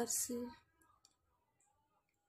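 A woman's voice finishing a word, ending about half a second in, followed by near quiet with a few faint short clicks about a second in.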